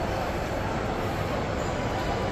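Steady, fairly loud background noise of an indoor shopping mall, a low rumble under an even hiss with no single event standing out.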